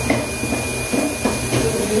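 Steady hiss of dental clinic equipment running, with a thin, steady high whine and a few faint clicks.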